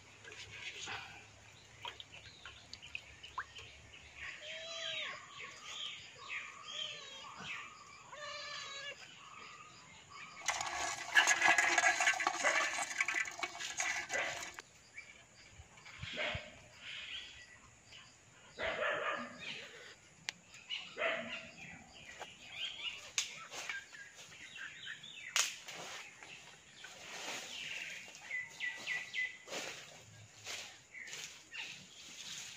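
Birds chirping amid outdoor rural ambience. A loud, even hiss-like noise lasts about four seconds in the middle, and scattered knocks and rustles come and go.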